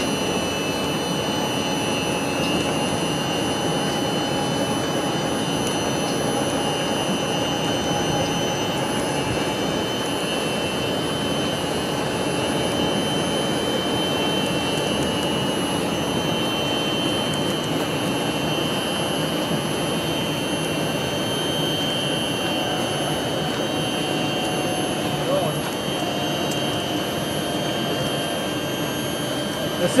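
Steady running noise of a small vehicle, with faint, steady high whines over it.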